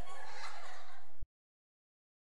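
Evil, demonic laughing from a film soundtrack, cutting off suddenly about a second in.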